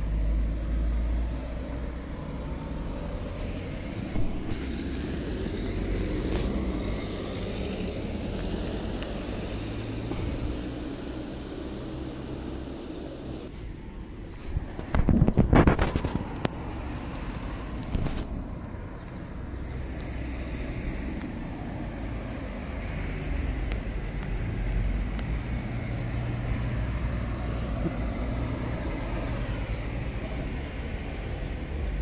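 Steady street traffic with a low rumble. A brief louder noise comes about halfway through, and there are a few sharp clicks.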